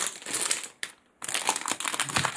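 Clear plastic wrapping around a pack of planner inserts crinkling as it is handled, in two spells with a short pause about a second in.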